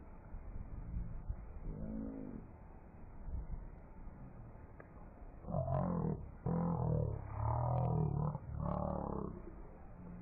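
A person's voice, slowed down to a deep, drawn-out sound, in several stretches from about halfway through, over a steady hiss.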